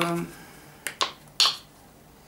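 Two quick sharp clicks from a plastic face-wash gel tube being handled, then a short sniff as the tube is held to the nose to smell it.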